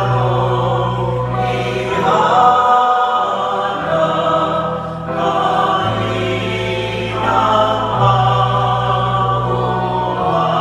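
Church choir singing a Tagalog hymn with piano accompaniment, over long sustained bass notes that change every few seconds.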